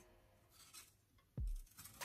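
A knife scraping faintly around the inside edge of a metal cake tin to loosen the baked cake, with a single low thump about one and a half seconds in.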